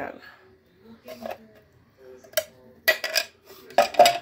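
A kitchen utensil scraping and clinking against a ceramic plate and cake pan as cake crumbs are pushed off. There are a few sharp clinks in the second half.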